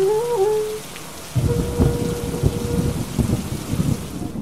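A held wind-instrument note from the background score bends upward and stops within the first second. After a short dip, a low, irregular rumble like thunder fills the rest, with a faint steady high note held over its middle.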